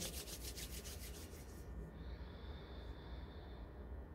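Palms rubbing together in quick back-and-forth strokes, a soft rasping of skin on skin, stopping about a second and a half in.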